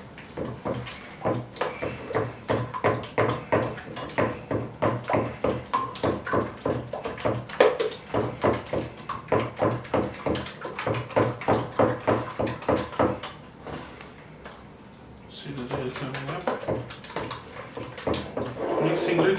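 Wooden stick stirring thickening cleaning gel in a plastic bucket: quick rhythmic strokes, about four a second, sloshing and knocking against the bucket, with a short pause a little before the end.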